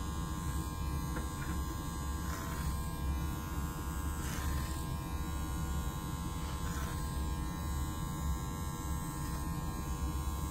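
A steady low electrical buzz runs throughout. Over it come short, soft snips and swishes every couple of seconds from barber shears cutting hair held over a comb.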